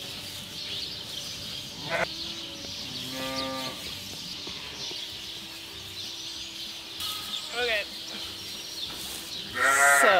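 Sheep bleating in a pen of ewes and young lambs: a few separate bleats, one wavering call about two thirds of the way in, and louder calls near the end.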